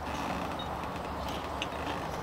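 Steady low background hum and hiss, with one faint click about one and a half seconds in.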